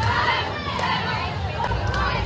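A group of young women shouting and cheering together, many voices overlapping, as a cheer team works through stunt practice.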